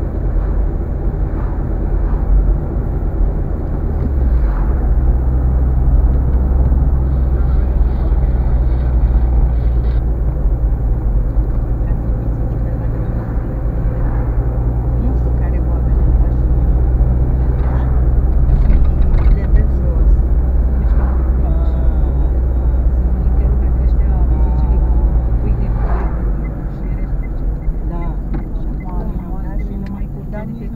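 Car engine and tyre noise heard from inside the cabin: a steady low drone while driving. About four seconds before the end the drone drops away and the sound gets quieter as the car slows.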